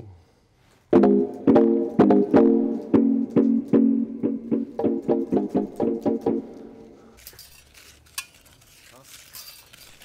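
A beat in progress playing over studio speakers: a held chord with a quick, regular pattern of sharp percussive clicks laid over it, made from chopped found-object samples such as a water-pot hit. It starts about a second in and stops about seven seconds in, followed by faint rustling and handling noise.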